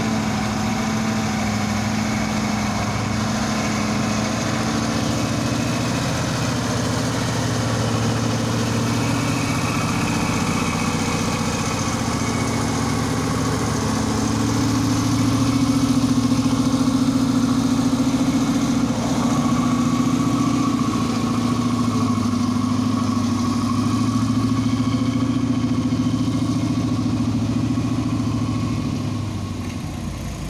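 Heavy tractor-trailer truck's diesel engine labouring at low revs up a steep climb under a full load: a deep, steady drone, swelling to its loudest about halfway through as the truck passes and fading near the end.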